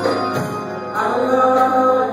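Male gospel vocal group singing in harmony with keyboard accompaniment, the voices holding sustained notes in the second half.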